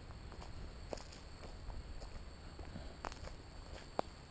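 Footsteps on dry leaf litter and dirt, with scattered crackling of leaves and twigs underfoot and two sharper snaps, about a second in and near three seconds.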